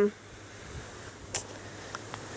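A spoken "um" trailing off at the very start, then faint background with a single brief click about one and a half seconds in.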